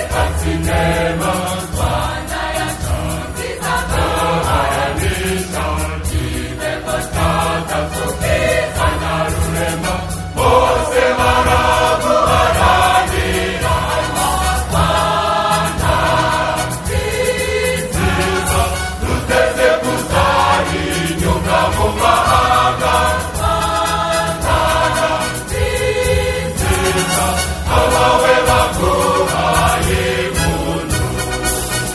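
Choir singing over an instrumental backing with steady bass notes, a little louder from about ten seconds in.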